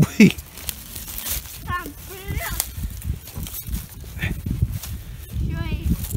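Rustling and crackling of dry pine needles and twigs as a hand digs through forest litter to cut out a mushroom, with short high-pitched children's voices in the background.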